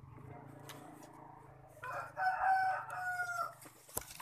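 A rooster crowing once, about two seconds in, ending on a long held note.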